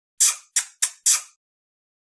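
Kissing sound effect: four quick smooching lip smacks in a row, about a third of a second apart, all within the first second and a half.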